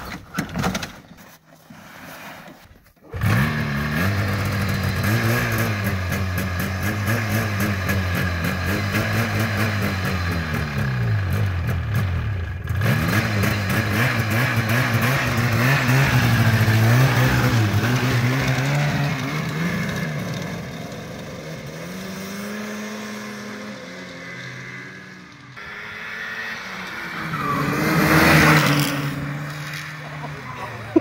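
Old Yamaha Phazer two-stroke snowmobile engine catching suddenly after a few knocks about three seconds in, then idling and being revved up and down. Near the end a snowmobile engine swells and fades as it goes by.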